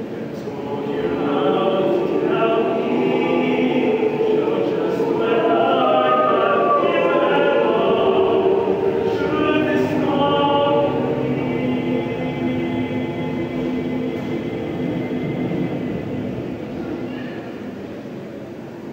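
Mixed choir of men's and women's voices singing in several parts, swelling to its fullest in the middle and growing softer toward the end.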